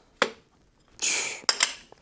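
Cutlery clicking against a plate while eating: one sharp click, a brief hiss about a second in, then two quick clicks.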